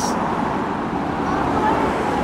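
Road traffic passing: a steady, even rush of tyre and engine noise with no single event standing out.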